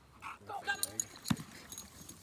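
Metal jingling and light clinks from a dog's collar and long-line clip as the Boxer bolts off on the line, with one sharp click about a second and a half in, under a short shouted 'oh'.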